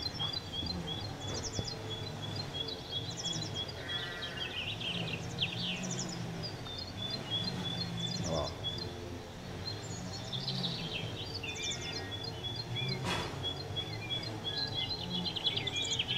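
Outdoor ambience of birds chirping, with a short high trill repeated every second or two, over a steady low background rumble.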